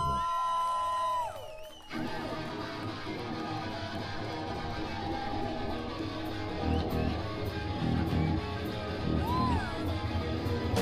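Rock-punk band playing live: a held high tone fades out in the first second or so, then electric guitars and a drum kit come in about two seconds in and play on steadily.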